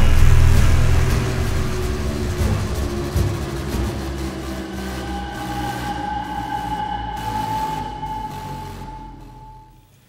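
Eerie sci-fi soundtrack music with a low rumble that fades away, then a single sustained high tone from about halfway through. It all fades out near the end.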